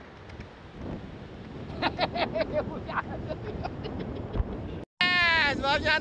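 Wind on the microphone over steady surf noise, joined after a couple of seconds by short bursts of a person's voice. The sound cuts out briefly near the end and loud speech follows.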